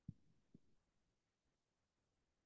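Near silence in a room, broken by two faint low thumps about half a second apart near the start.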